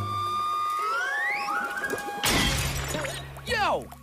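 Cartoon sound effects: a held tone slides upward in pitch as the thermometer's column climbs. About two seconds in comes a sudden glass-shattering crash as the thermometer bursts. Near the end a character lets out a wavering yell.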